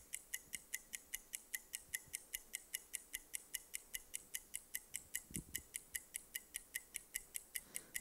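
Game-show countdown-timer sound effect: quiet, even, high-pitched ticks at about five a second.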